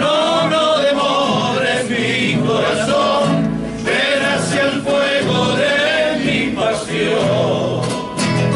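A group of men singing a Cuyo folk song together to several strummed acoustic guitars, in long sung phrases broken by short breaths.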